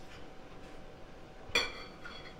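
A fork clinks against a plate once, about one and a half seconds in, with a brief ring, over quiet room noise.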